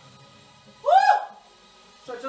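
A woman's short, high vocal whoop about a second in, its pitch rising and then falling.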